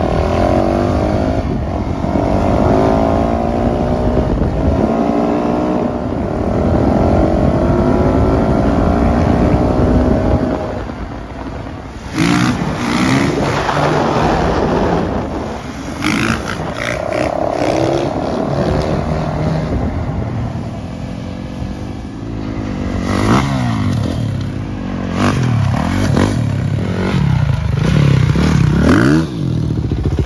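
Dirt bike engines revving and accelerating, the pitch climbing and dropping again and again through the gears. A stretch of rattling, clattering noise comes about twelve seconds in, and the revving rises and falls sharply near the end.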